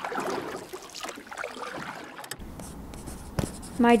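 Pen scratching across paper in irregular strokes, stopping about two and a half seconds in. A low steady hum follows, with a single click shortly before a voice begins.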